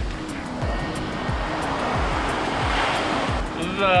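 Ocean surf washing up a sand beach, swelling to a peak about three seconds in, under background music with a steady drum beat.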